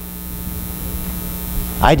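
Steady electrical mains hum with a high hiss over it; the hiss cuts off and a man's voice comes in near the end.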